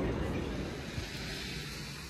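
Outdoor street noise with a steady low rumble, slowly fading.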